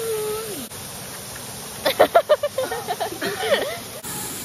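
Young women's voices: a brief held vocal note, then, about two seconds in, a quick burst of laughter and high-pitched squeals. The steady rush of a waterfall sits underneath.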